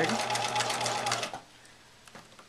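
Electric sewing machine stitching rickrack trim onto a fabric pocket: the motor hums under a rapid needle clatter, then stops about one and a half seconds in.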